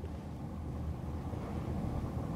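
Steady low hum of studio room tone, with no distinct events.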